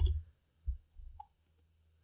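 Computer keyboard keys pressed a few times: four or five separate clicks with a dull low thud, unevenly spaced. The loudest comes right at the start and the rest are fainter.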